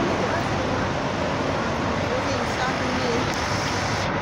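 Steady street traffic noise with coach buses running, and people talking in the background.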